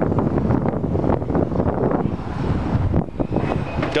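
Wind buffeting the microphone outdoors, a loud, uneven rumble with no clear steady tone.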